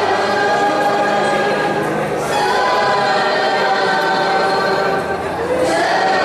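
Church choir singing a communion hymn in long held notes. The phrase changes about two seconds in and again near the end.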